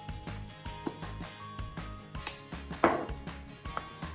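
Background music with a steady beat. About three seconds in there is a brief noisy handling sound, made as the diced filling is mixed by hand in the bowl.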